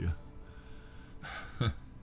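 A man takes a quick, audible breath in about a second and a half in, followed by a short voiced sound falling in pitch, the start of a laugh.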